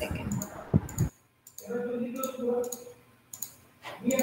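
Scattered clicks and light taps from someone working a laptop, broken by two short dropouts to dead silence, with a faint voice in between.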